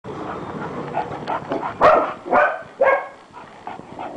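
A dog barks three times in quick succession, about half a second apart, in the middle of the stretch, after a lower, rough steady noise.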